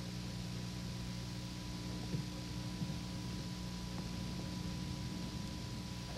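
Steady low electrical hum and hiss, with a couple of faint ticks about two and three seconds in.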